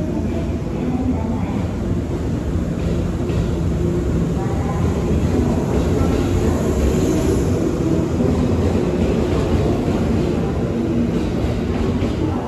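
A JR West 117-series electric multiple unit pulling out of the platform, its motors and wheels giving a steady loud rumble with a held low whine as it gathers speed past the microphone.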